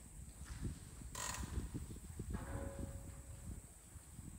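Wind rumbling on a clip-on microphone outdoors, with a brief hiss about a second in and a faint thin whine in the middle.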